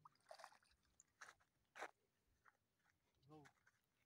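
Near silence, broken by a few faint, scattered clicks and short rustles, with a brief faint voice sound about three seconds in.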